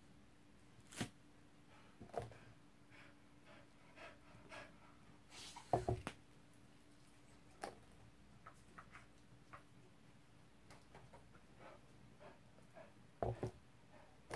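Gloved hands handling and tilting a paint-covered vinyl record on a paper-covered worktable: scattered light knocks and rustles, the loudest clusters about six seconds in and near the end, over a faint steady hum.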